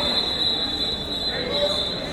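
A steady, high-pitched squealing tone held for about two seconds, cutting off at the end, over the faint chatter of people.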